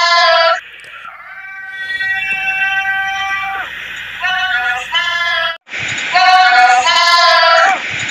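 Sung jingle from an Ariel laundry-detergent TV commercial, in an effects-edited version: short sung phrases, then long held notes in the middle. The sound cuts out briefly about five and a half seconds in, and the jingle starts over louder.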